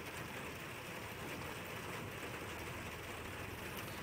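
Steady hiss of rain, even throughout with no thunderclap or other sudden sound.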